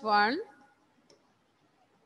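A teacher's voice saying "one", then near silence with a single faint click about a second in.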